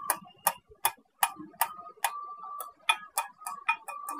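Steel-on-steel taps, about two or three a second and coming faster near the end, each with a short metallic ring: light hammer blows on the kingpin as it is worked into the steering knuckle of a truck front axle.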